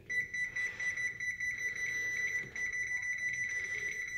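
Electronic oven control panel on a gas range beeping in a rapid, continuous string of high beeps as the temperature down-arrow is pressed and held, stepping the bake setting down from 350 toward 210.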